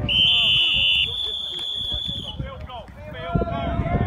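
Referee's whistle blown in one long, shrill, steady blast of a little over two seconds, signalling the end of the play. Shouting voices of players and spectators follow.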